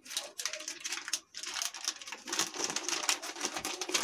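Thin polythene sheet crinkling and crackling as it is slowly peeled off oiled, rolled-out besan dough: a quiet, irregular string of small clicks.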